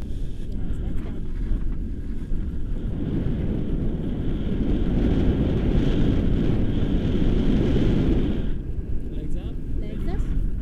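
Wind rushing over the camera microphone as a tandem paraglider flies low over the slope, building about three seconds in and dropping away sharply near the end as the glider slows to land.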